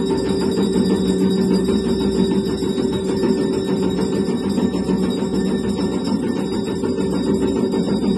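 Conch shell (shankh) blown in one long, unbroken held note, loud and steady in pitch.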